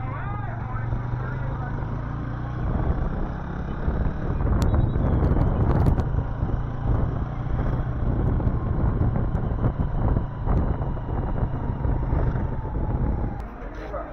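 A motor vehicle's engine running with road and wind noise, growing louder a few seconds in and easing off near the end.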